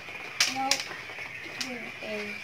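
Metal spoon scraping out the inside of a small pumpkin, with a few sharp clicks, two close together about half a second in.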